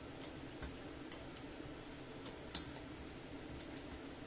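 A black plastic spoon stirring chickpeas and potato chunks in a stainless steel pot, giving faint, irregular clicks as it touches the pot.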